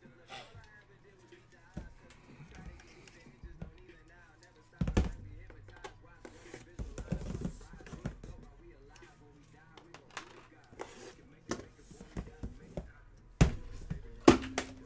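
Knocks and thumps of an aluminium briefcase being handled: lifted off and set back down on a second case, with the sharpest knock near the end. Faint background music runs underneath.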